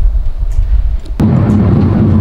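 Wind buffeting the microphone as a loud, irregular low rumble. A little over a second in, it cuts off sharply and a steady low hum takes over.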